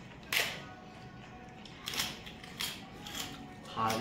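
Four sharp clicks and knocks of tableware and food being handled at a meal, the first and loudest about a third of a second in, the others spaced across the rest. A voice starts just before the end.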